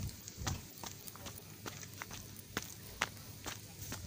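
Footsteps of a hiker walking down a dry dirt trail: faint, short, irregular steps about two or three a second.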